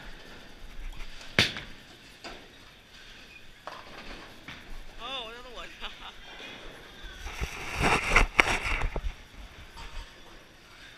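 Bowling-alley sounds: a single sharp knock about a second and a half in, then a short wavering voice-like sound near the middle, then a loud run of clattering crashes of pins being struck and scattering between about seven and nine seconds.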